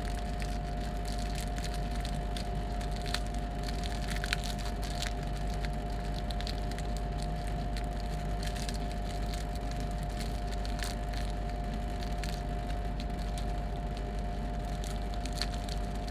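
A foil-lined candy wrapper crinkling and crackling in irregular bursts as gloved hands twist it open and crumple it, over a steady background hum.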